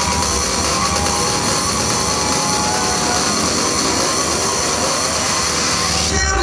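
Live psytrance over a club sound system, loud and distorted on the recording: a dense wash of noise with no clear beat. It breaks off right at the end as clear synth lines come in.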